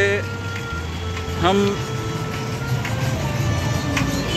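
Street traffic: a steady low rumble of vehicles with a few long, steady high tones running through it.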